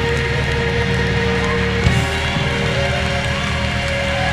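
Live gospel band vamping during worship: held keyboard chords over bass and drums, with a single sharp hit about two seconds in and a hiss of congregation noise underneath.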